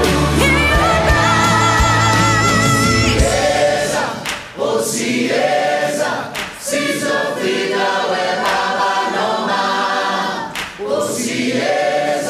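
Background music: a choral song of sung voices with a wavering vibrato. The deep low accompaniment drops out about three seconds in, and the voices go on alone in phrases with short breaks between them.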